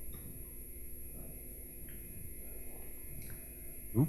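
Steady low hum of the room and its amplification with no speech, broken by two faint short clicks, about two seconds in and again a little over three seconds in.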